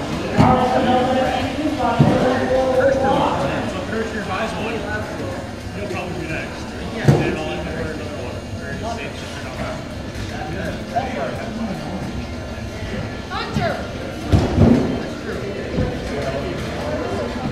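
Indistinct chatter of several people, echoing in a large indoor hall, with a few sharp knocks and thuds scattered through it, the loudest about seven seconds in.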